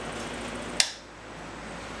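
Scroll saw running, then switched off with a sharp click a little under a second in, after which its running noise drops away.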